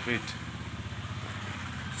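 An engine idling steadily with a fast, even pulse.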